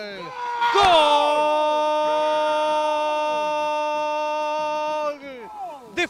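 Male football commentator's goal cry, '¡Gol!' drawn out into one long shouted note that is held steady for about four seconds before it breaks off.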